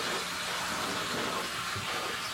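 Steady rushing and splashing of water in a large aquarium.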